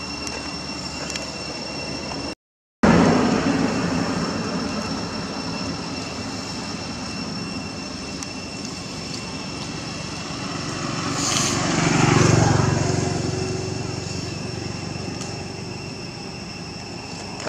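A motor vehicle passing along the road, its noise swelling to a peak about twelve seconds in and then fading, over a steady high-pitched drone. The sound cuts out completely for a moment near the start.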